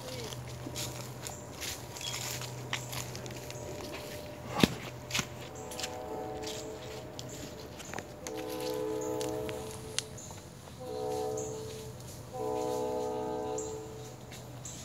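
Footsteps on a leaf-littered trail, with one sharp knock near the middle. Then a train horn sounds a steady chord in four blasts, long, long, short, long: the grade-crossing signal.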